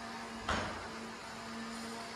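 Busy buffet dining-room background noise with a steady low hum, and one sharp knock or clatter about half a second in.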